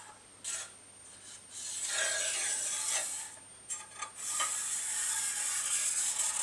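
Scriber scratching along a steel rule on sheet metal: a few rasping strokes, the longest lasting about a second and a half, with short scrapes between them.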